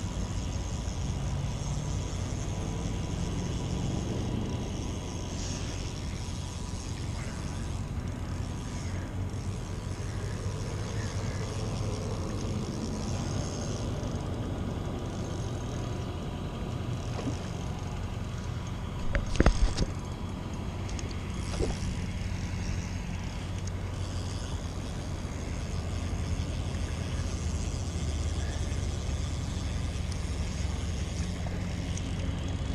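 Steady low outdoor rumble throughout, with a sharp knock about two-thirds of the way through and a fainter one shortly after.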